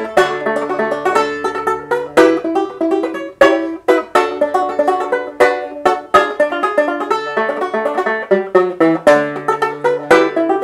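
Banjo played solo: a quick, steady stream of plucked notes in a tune, with lower notes moving underneath the melody.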